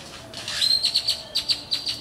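A songbird chirping: a quick run of short, high chirps, about eight a second, starting about half a second in.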